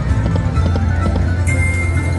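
Dancing Drums slot machine playing its music and reel-spin sounds during a spin, with a rhythmic clopping beat over a steady bass. A sustained high chime tone starts about one and a half seconds in.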